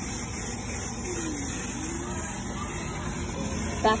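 Steady outdoor background of low rumble and hiss, with faint children's voices and a short spoken word near the end.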